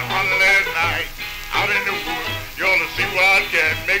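Old-time jug band music from a 78 rpm record: a wavering, pitch-bending lead line over a steady low rhythmic pulse. A sung word comes in right at the end.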